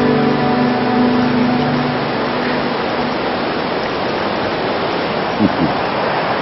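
Steady rush of whitewater rapids in a rocky mountain river, with background music fading out over the first two seconds.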